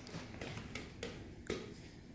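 About five light, irregular clicks and taps over faint room noise, the sharpest about one and a half seconds in.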